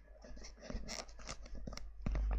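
Faint, irregular scratching and a few small clicks: handling noise from a headset microphone as it is being adjusted.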